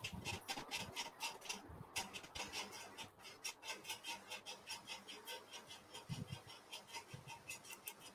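Faint computer keyboard typing: quick light key clicks, several a second, with a few soft low thumps.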